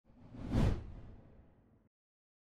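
Whoosh transition sound effect with a low rumble underneath. It swells to a peak about half a second in, then fades away and cuts off just before the end.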